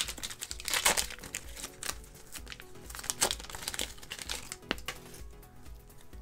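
Plastic trading-card pack wrapper being torn open and crinkled by hand, with the cards slid out; a few sharp crackles stand out among softer rustling.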